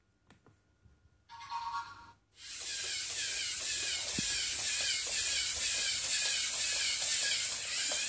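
A short electronic tone, then from about two seconds in a Lego EV3 eight-legged walking robot running: a steady mechanical whir with a strong hiss from its motors, leg linkages and spinning top flywheel.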